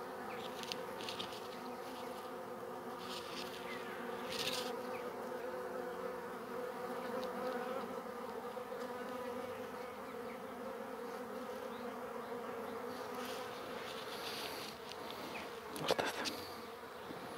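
A small cluster of honeybees on the ground buzzing steadily, a hum of several overlapping tones. A few brief hissy rustles break in now and then.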